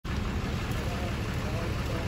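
Voices chatter indistinctly over a steady low rumble.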